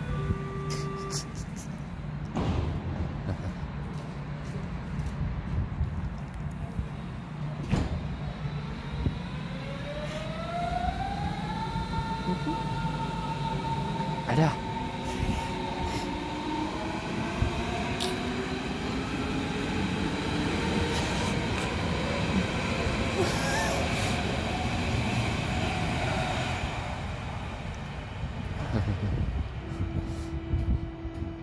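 Electric train pulling away: a whine of several tones that climbs in pitch, holds, then climbs again more slowly over about fifteen seconds, over a steady low hum, with a few sharp knocks along the way. A short laugh near the end.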